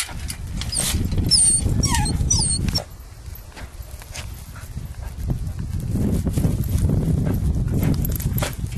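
A dog's short, high, excited cries, whines and yelps in the first three seconds, over a loud low rumble that fades about three seconds in and comes back after about five and a half seconds.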